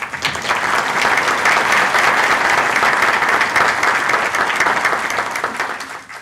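Audience applauding, many hands clapping together. The clapping starts suddenly and tapers off near the end.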